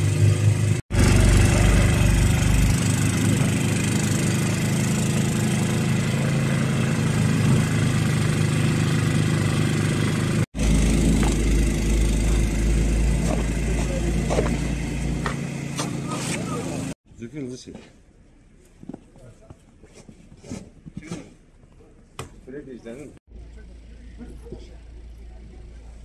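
Snowblower engine running steadily and loudly, broken off sharply a couple of times. In the last third it gives way to a much quieter stretch with scattered short scrapes and knocks.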